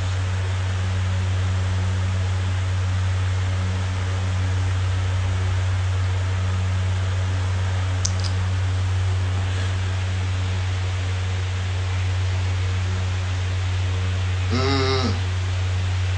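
A steady low hum with an even hiss over it, unchanged throughout. There is one short click about halfway through and a brief voice sound near the end.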